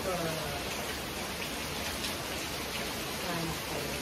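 Faint low speech, a few words just after the start and again near the end, over a steady even hiss.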